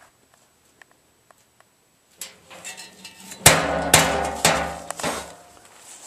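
Metal knocks on the steel drum firebox: a few light taps, then three louder clangs about half a second apart, each ringing on and dying away after about a second.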